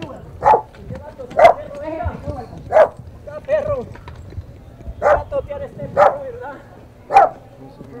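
A dog barking: about six short, sharp barks, irregularly spaced a second or more apart.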